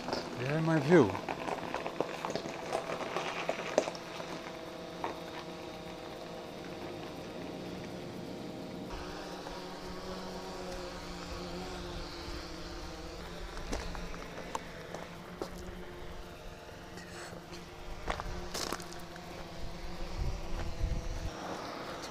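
DJI Phantom quadcopter hovering, its propellers humming steadily, the pitch of the hum shifting slightly about nine seconds in.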